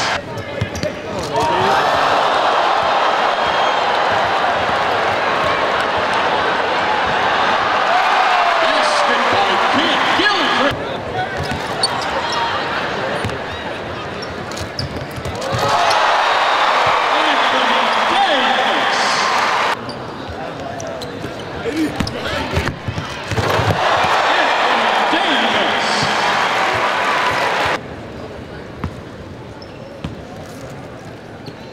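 Arena crowd cheering in three loud surges, with quieter stretches between in which a basketball bounces on the court.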